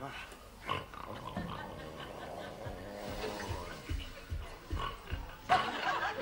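Snoring from sleepers upstairs, with a run of soft low thuds like creeping footsteps in the second half and a sharp click near the end.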